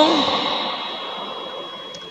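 A pause in amplified speech: the man's last word echoes and dies away slowly in a large, reverberant church hall. A faint, steady, high-pitched tone runs underneath.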